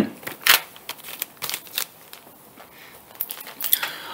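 Handling noise: a few light clicks and rustles of a cardboard LP sleeve and body movement, with quiet gaps between them and a small cluster near the end.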